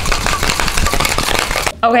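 Metal tin-on-tin cocktail shaker being shaken hard, its contents rattling rapidly against the metal. The rattle cuts off a little before the end.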